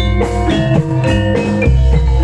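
Jaranan dance music played by a gamelan-style ensemble: struck metallophone notes in a quick, steady pattern over drums and a deep bass.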